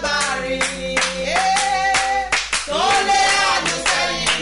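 A woman singing with long held notes while clapping her hands in a steady rhythm, about three claps a second.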